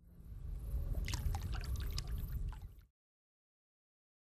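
Water gurgling and splashing with bubbly drips over a low rumble, swelling up in the first second and cutting off abruptly about three seconds in.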